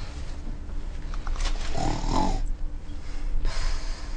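A woman snoring in her sleep, the loudest snore about halfway through, over a steady low hum.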